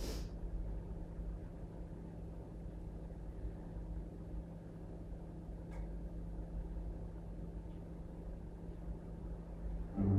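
Quiet room tone: a steady low hum, with one faint click about six seconds in.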